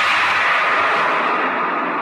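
A sudden wash of noise, with no tune in it, that sets in as the singing and instruments of a Bollywood film song cut off, then slowly fades.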